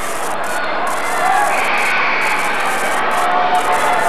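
Crowd in a gymnasium at a basketball game: a steady din of many voices talking at once.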